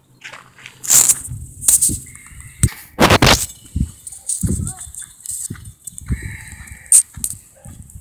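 A phone's microphone being handled and buffeted by wind while its holder walks across a dirt infield, with rough rustles and knocks, the loudest about three seconds in. Soft footsteps on dirt follow, about one every half second or so.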